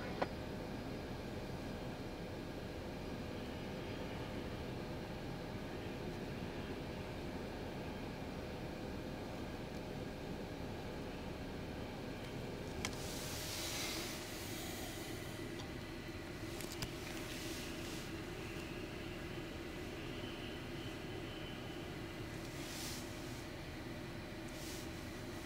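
Steady low rumble and hiss of outdoor background noise, with a short louder hiss about thirteen seconds in.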